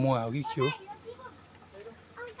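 A person's voice speaking in the first half-second or so, then only faint scattered voice sounds.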